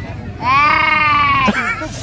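A woman's long, drawn-out laughing cry, held on one pitch for about a second and sagging slightly, then breaking into a short wavering laugh.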